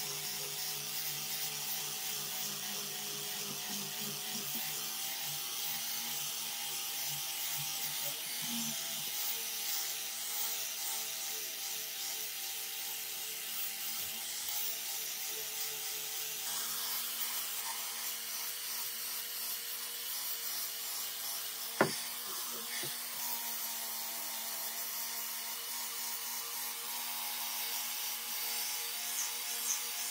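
Electric angle grinder with a rubber-backed sanding disc running steadily, its motor whine over the hiss of the disc sanding a wooden knife handle. A single sharp knock a little over two-thirds of the way through.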